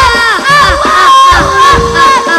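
A group of children's voices shouting together in loud, overlapping calls that fall in pitch, with low drum thumps underneath.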